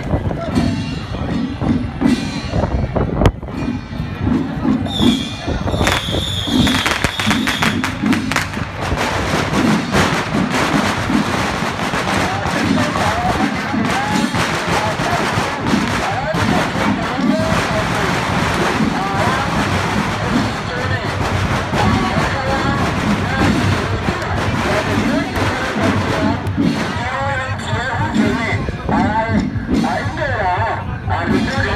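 Busy street-procession noise: people talking and music playing together, with many short sharp cracks through it. A high whistle-like tone sounds for a few seconds near the start.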